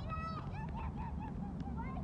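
Geese honking, a quick run of short calls one after another, over a steady low rumble.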